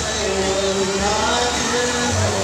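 A song played over loudspeakers, with long held notes, over the steady rush of fountain jets spraying and falling back into the pool.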